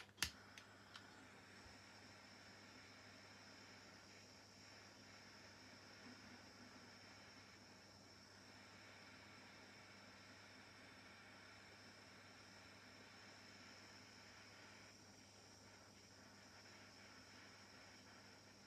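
Small handheld butane gas torch clicked on, with a few sharp igniter clicks in the first second. Then its small flame gives a faint, steady hiss. The flame is weak because the torch is nearly out of gas.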